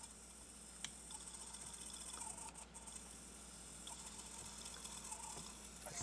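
Faint small clicks and light scraping as a small solenoid-and-magnet mechanism is adjusted by hand, with one sharper click about a second in, over a steady low hum.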